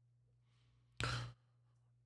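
A man's short, audible breath into a close microphone about a second in, over a faint steady low hum.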